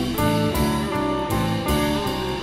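Live band playing an instrumental passage: electric guitars over a drum kit keeping a steady beat.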